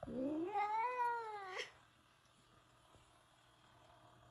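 A domestic cat giving one long, drawn-out meow of about a second and a half, its pitch rising, holding, then sliding down before a short upturn at the end.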